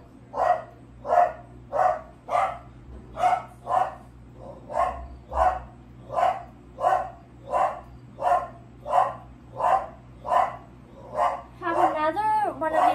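A dog barking over and over in a steady rhythm, about three barks every two seconds.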